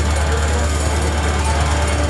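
Live brutal slam death metal: down-tuned distorted electric guitar over very fast, relentless drumming, with growled vocals into the microphone.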